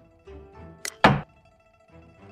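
Xiangqi board animation's piece-move sound effect: a short click and then a louder knock about a second in, as a chariot piece lands on its new square, over soft instrumental background music.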